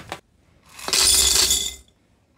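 Dry egg noodles poured through a plastic canning funnel into a glass mason jar: a rattling rush of pasta against the glass that starts about half a second in and lasts a little over a second.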